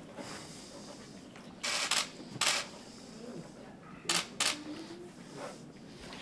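Stills-camera shutters firing in four short bursts of rapid clicks over a quiet room background.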